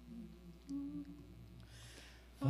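A voice quietly humming a few low notes, the clearest just under a second in: the starting pitch being given for an a cappella hymn.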